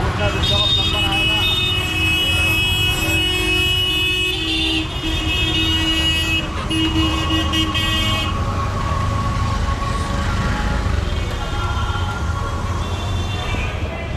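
Street traffic: auto-rickshaw and scooter engines running at a steady low rumble, with vehicle horns honking in a broken series over the first eight seconds or so, then one steadier tone for a few seconds.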